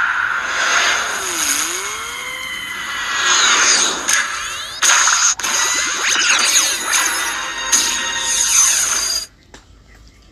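Film soundtrack: music mixed with dense action sound effects, with sweeping pitch glides and sudden hits, cutting off abruptly about nine seconds in.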